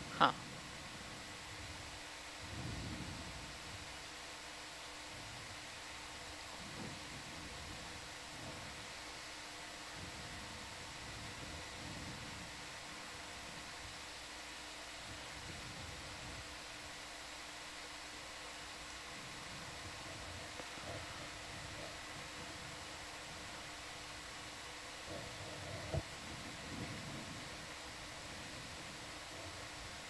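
Low, steady hiss and electronic hum of a control-room audio feed, with a few faint low murmurs and one short click about 26 seconds in.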